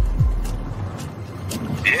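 Low rumble of a car's cabin, opening with a loud low thump whose pitch falls away over the first second.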